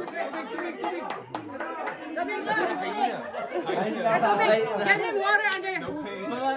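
Several people talking over one another in lively group chatter.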